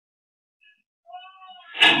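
A few faint, high wavering cries, then a sudden loud crash and commotion near the end as a car ploughs into the tables and plastic stools of a street food stall.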